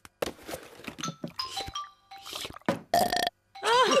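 A short cartoon music cue of a few brief plinking notes among quick noisy sound-effect bursts, with laughter starting near the end.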